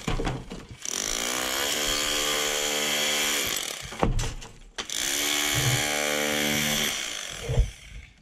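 Rotary hammer chiselling old render off a brick wall, run in two bursts of about three and two seconds with a steady whine, and a short pause between them. A thud near the end.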